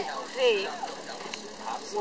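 Speech: a person's voice talking.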